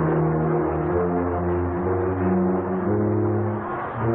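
A student marching band, a large wind and percussion ensemble, playing a slow passage of held low notes that move to a new note every half second to a second. There is a brief dip just before a new chord starts at the end. The sound is dull and muffled, as from an old tape recording.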